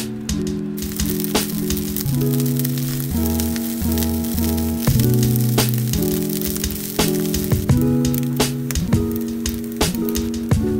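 Food sizzling as it fries in a pan, under background music with a steady beat and changing chords.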